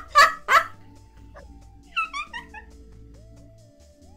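Two loud bursts of breathy, wheezing laughter, then about two seconds in a short falling run of high-pitched squeaks, over steady soft background music.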